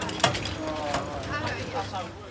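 Indistinct voices of people talking over steady street background noise, with a sharp click about a quarter of a second in.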